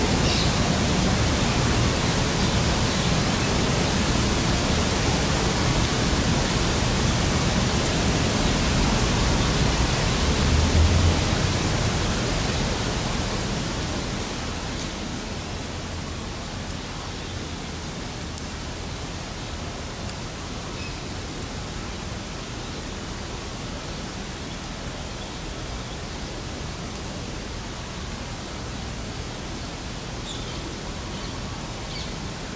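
Steady rushing outdoor noise with a low rumble, with a brief low bump about a third of the way through, then easing to a quieter, steady hush about halfway through.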